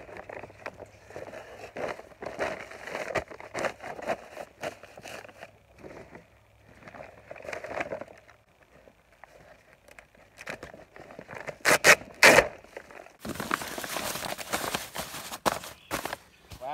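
Paper poultry feed bags crinkling and rustling as they are handled, unfolded and spread into a wooden raised-bed frame. There are two loud sharp crackles about three quarters of the way through, then a denser, steadier rustle over the last few seconds.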